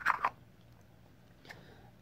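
Painted wooden nesting doll handled in the hands: a short scrape of the wooden halves at the start, then quiet with a faint click about one and a half seconds in as the two halves fit together.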